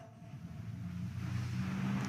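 A low, steady rumble with a faint hiss, slowly growing louder.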